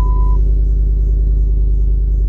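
Truck engine idling, a steady low rumble heard from inside the cab. A steady high tone sounds until about half a second in, then stops.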